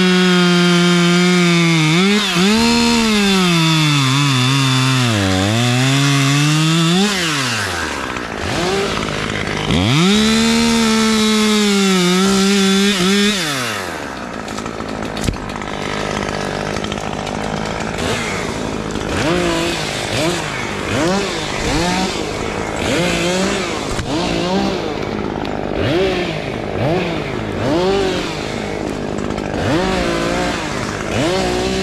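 Husqvarna T540XP Mark III two-stroke top-handle chainsaw in two long runs at full throttle during the first half, its pitch sagging and recovering as it works through wood. From about halfway it drops to idle, with a quick throttle blip about once a second.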